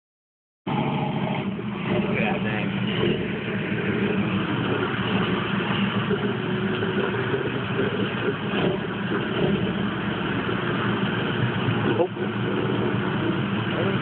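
Engine of a lifted off-road truck running steadily under load as it crawls its tyres up a muddy rock ledge, with a sharp knock near the end.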